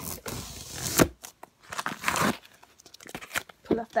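A paper security sticker being torn and scratched off a cardboard box. The scraping, tearing sound comes in two stretches, with a sharp snap about a second in.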